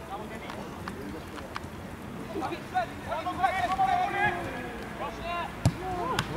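Men shouting and calling to each other across a football pitch during play. A single sharp thud of a football being kicked comes near the end.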